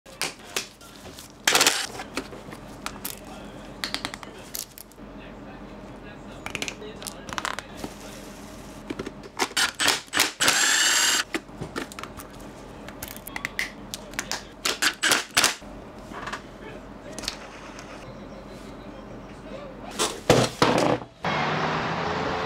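Close-up clicks and knocks of hands fitting 60 mm urethane wheels into a plastic inline-skate frame, a string of short sharp taps with a louder rushing sound lasting about a second near the middle.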